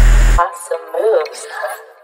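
Trap instrumental ending: the heavy 808 bass cuts off about half a second in, leaving a thin, voice-like melodic tail that fades out.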